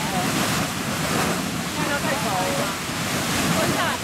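Beehive Geyser erupting: a steady, loud rush of water and steam jetting from its narrow vent, with no let-up.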